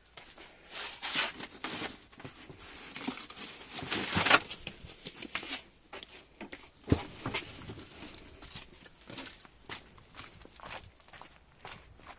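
Someone rummaging for grooming brushes in a cluttered tack room: scattered knocks of handled objects, rustling and footsteps, with a louder rustle about four seconds in and a sharp knock about seven seconds in.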